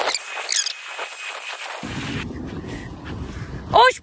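Rustling of long grass underfoot with wind on the microphone, with a few high chirping calls in the first second. A woman's voice calls out loudly just before the end.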